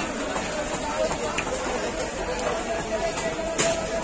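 Indistinct voices of several people talking in the background, a steady chatter with no clear words.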